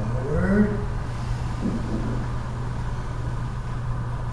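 A steady low hum, with a brief voice about half a second in and a fainter one around two seconds.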